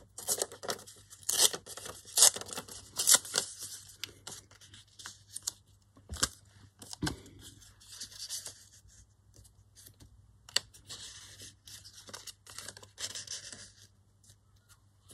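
Paper torn by hand in a series of short rips, with the scraps rustling and sliding as they are handled.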